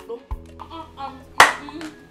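Background music with a single sharp hand strike about one and a half seconds in, and a faint voice before it.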